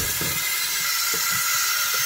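Kitchen faucet running steadily into a stainless steel sink and over hands being washed, an even hiss of water.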